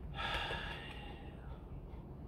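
A man breathes out audibly, a short sigh lasting about a second near the start that fades away.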